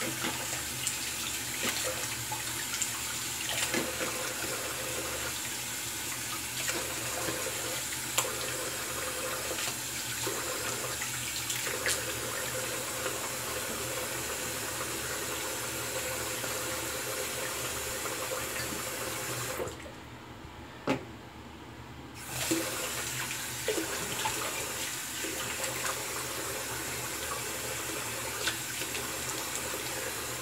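Bathroom sink tap running steadily, with small splashes and knocks as things are rinsed under it. The water shuts off for about two seconds roughly two-thirds of the way through, then runs again.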